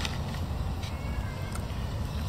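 Handling of a cardboard fried-chicken box and eating sounds, with a few sharp clicks over a steady low rumble. Faint, thin, high gliding calls come and go in the background.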